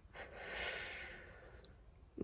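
A person's long breath out, a nervous sigh: one soft hiss that swells about a quarter second in and fades away by about a second and a half.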